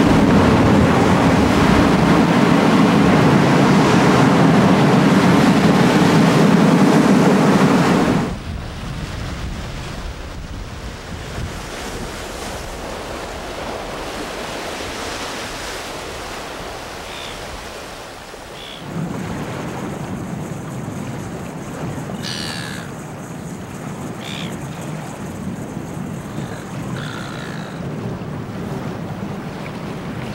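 Heavy surf breaking and churning against rocks, loud and continuous, cutting off suddenly about eight seconds in. After that a much softer steady wash of sea and wind, with a few short high calls in the second half.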